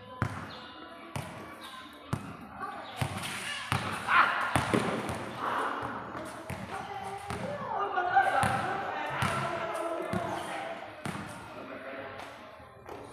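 Basketball bouncing on a concrete court: irregular dribbles and thuds throughout, with players' voices calling out in the middle.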